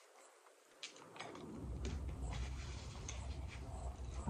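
Close-miked biting and chewing of a mouthful of food. A few crisp clicks come about a second in, then continuous chewing noise.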